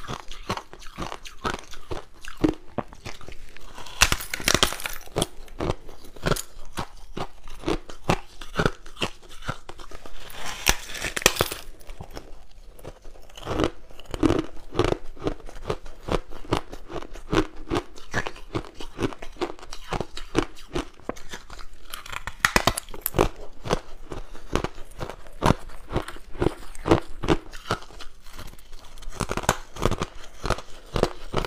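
White crushed ice being bitten and chewed, close-miked: a continuous run of rapid, dense crunches, with louder stretches of crunching about four, ten and twenty-two seconds in.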